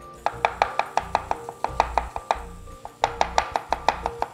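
Chef's knife rapidly chopping red onion on a wooden chopping board, about six strokes a second. The chopping comes in two runs, with a short pause a little past the middle.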